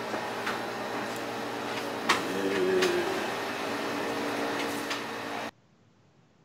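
Steady low electrical-sounding hum of room tone with a few faint clicks and a brief low murmur. It cuts off abruptly to near silence about five and a half seconds in.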